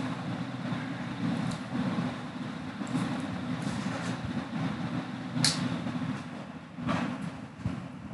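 Steady rumbling background noise with a few sharp clicks, one about five and a half seconds in and another about seven seconds in.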